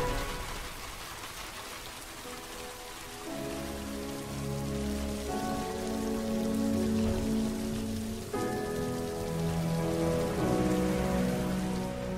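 Steady rain falling, with sustained music chords coming in about three seconds in and shifting to new chords every few seconds.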